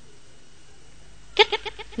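A pause in a spoken reading with only faint steady background noise, then the reader's voice comes back with a word about one and a half seconds in.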